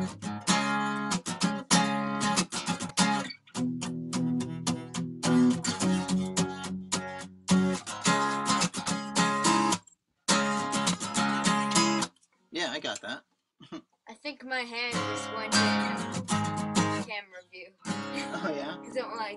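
Acoustic guitar strummed in short runs of chords that stop and start again, as if a song is being tried out. The sound cuts out completely a couple of times in the second half.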